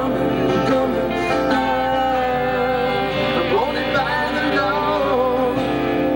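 Live band music: strummed acoustic guitars and an electric guitar playing together, with a sung vocal phrase gliding in pitch around the middle.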